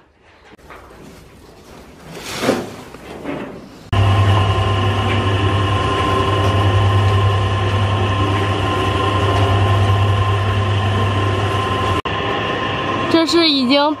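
Electric feed mixer running with a steady low hum and a few fixed whining tones as it churns chopped corn stalks, straw and meal; the hum comes in abruptly about four seconds in, after a few quiet seconds.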